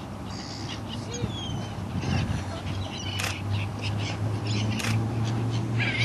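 Seagulls calling, in short scattered cries over a steady low hum.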